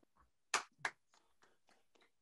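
Several people clapping over a video call, heard faintly: two sharper claps about half a second in, then a run of quicker, fainter claps.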